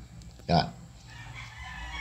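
A faint, drawn-out high-pitched call in the background lasting about a second near the end, after a brief voiced sound from the man.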